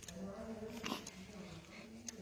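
Newborn baby whimpering softly in long, drawn-out whines, with a short click of handling about a second in.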